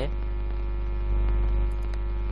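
Steady electrical mains hum with a faint hiss beneath, picked up in the recording chain, swelling slightly a little after a second in.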